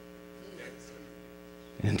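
Steady low electrical hum from the sound system, a stack of even tones filling a pause in the preaching. A man's voice comes back in near the end.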